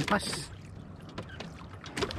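Water sloshing and splashing around a small wooden fishing boat while a handline with a heavy fish on it is hauled in, with a short splash near the start.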